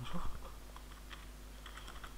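Computer keyboard being typed on: a handful of separate key clicks, mostly in the second half, as a short number is entered.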